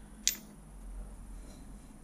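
A metal gear set down on a milling machine's T-slot table: one sharp metallic click about a quarter second in, then only a faint low hum.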